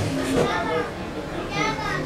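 People's voices calling out across an open-air football pitch, with a higher-pitched call near the end.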